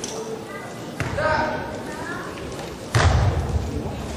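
Two impacts about two seconds apart, a sharp knock about a second in and a heavy thud near the end: taekwondo poomsae performers' stamps and landings on the competition floor, with voices in the background.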